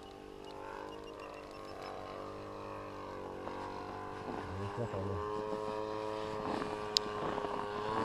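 Two-stroke 45cc Husqvarna chainsaw engine driving an RC plane in flight, heard from the ground: a steady engine drone whose pitch drifts up and down as the plane flies around, growing louder in the second half.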